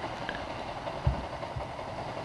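Yamaha Sniper MX King 150's single-cylinder engine idling steadily at a stop, with a soft thump about a second in.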